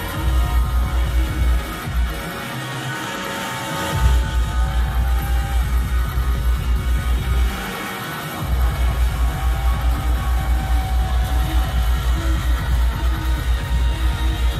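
Live grime music played over a concert PA and recorded from the crowd, with a heavy pulsing bass beat. The bass cuts out twice, for about two seconds near the start and for about a second around the middle, then comes back.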